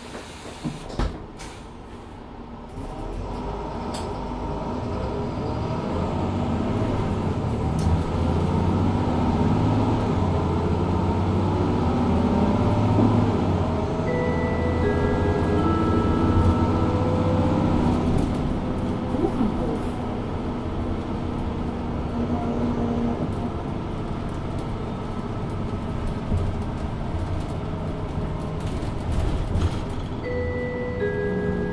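Mercedes-Benz Citaro 2 LE city bus under kickdown, heard from on board: its OM 936 h diesel straight-six pulls hard through the ZF EcoLife six-speed automatic. The engine sound swells about three seconds in, stays loud for some fifteen seconds, then eases a little. About halfway through, a short descending electronic chime sounds over it.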